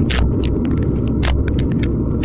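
Wind buffeting the microphone of a bike-mounted action camera at about 49 km/h, a loud steady low rumble, mixed with tyre noise on the road and many quick sharp clicks and rattles.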